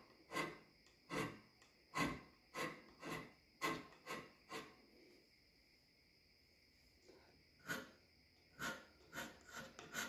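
Hand scraper strokes on the cast iron compound slide of a Grizzly lathe, scraping down high spots so the slide sits flat: short scrapes about one every half second, a pause of about two and a half seconds midway, then a few more strokes near the end.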